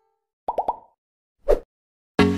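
Editing sound effect for an animated subscribe button. Three quick rising pops come about half a second in, followed by one short whoosh at about a second and a half.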